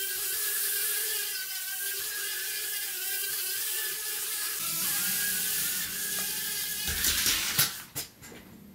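JJRC H36 mini quadcopter's brushed motors and ducted propellers whining steadily in flight. About halfway through, the pitch shifts and a lower hum joins as the drone drops. Near the end come a few sharp knocks as it is drawn against the wardrobe doors, turns vertical and loses lift.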